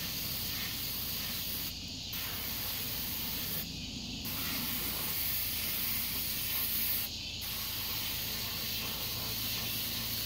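Water spraying from a hose onto an ATV in a steady hiss, the spray breaking off briefly three times, about two, four and seven seconds in.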